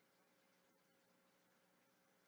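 Near silence: a pause in a man's narration, with only a very faint steady background hum.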